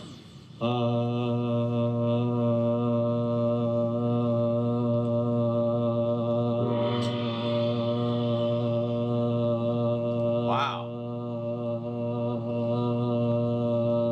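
A man's voice holding one low, steady droning hum, like a meditation chant, done as mock "white noise". It starts just after the beginning and holds one pitch, dipping briefly about ten and a half seconds in.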